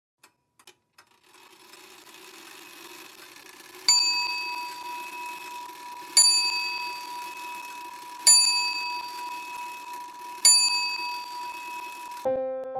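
A small metal bell struck four times, about two seconds apart, each a bright ding that rings on and fades. A low steady hum sits underneath, with a few faint clicks at the very start.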